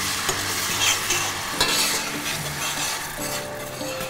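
Hot coconut oil with just-fried ground spices and grated ginger sizzling steadily in a pan as coconut milk is poured in; the sizzle eases a little toward the end as the milk cools the fat.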